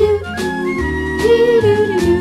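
1958 pop song: two young girls singing a wordless 'do do do' melody in held notes, backed by a small band with a bass line.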